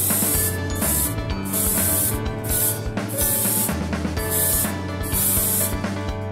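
An airbrush spraying a duralumin-colour base coat in short bursts of spray, about six in all, with a longer pause near the middle.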